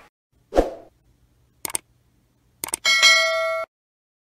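A soft thud, then two sets of short sharp clicks, then a bright ding with several ringing tones that lasts under a second and cuts off abruptly.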